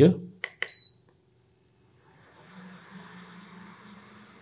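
Button clicks and a short high beep from an Atorch electronic DC load as its test is switched on. About two seconds in, the load's cooling fan starts and runs with a faint steady whir and low hum, the load now drawing current.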